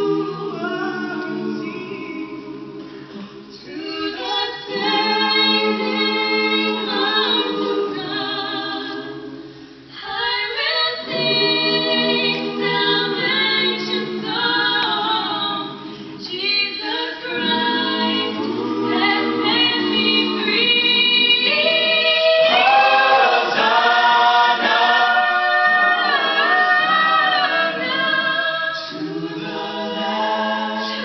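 Mixed-voice a cappella choir singing in harmony, men's and women's parts together. The phrases break briefly about three and ten seconds in, and the singing swells louder in the last third.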